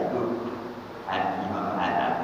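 A man's voice speaking into a microphone, heard through a loudspeaker, with a short dip in level before he carries on about a second in.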